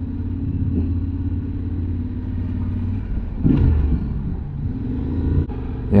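Yamaha Ténéré 700's parallel-twin engine running at low speed, a steady low rumble. It grows briefly louder about three and a half seconds in.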